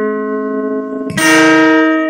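Acoustic guitar playing slow ringing chords: a chord left to sustain, then a new chord struck about a second in and left to ring out.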